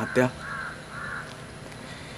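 A crow cawing twice, about half a second apart, just after a man's voice stops.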